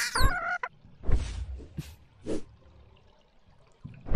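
A small animated creature's short cry, gliding in pitch, ending within the first second, followed by a few soft thumps and knocks.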